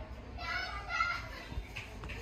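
A child's high-pitched voice calling out briefly, lasting under a second, over a low background rumble.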